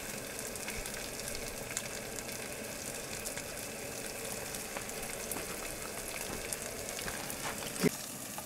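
Shaved steak and melting cheese sizzling in a small frying pan over a backpacking canister gas stove: a steady sizzle with many small scattered pops. A short knock comes near the end.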